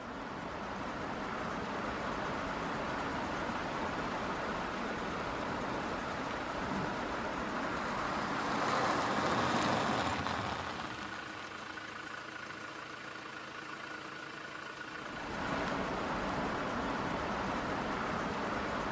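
Road and traffic noise heard from inside a moving car on a wet road, a steady rushing hiss. It swells briefly about halfway through, drops, and rises again a few seconds before the end.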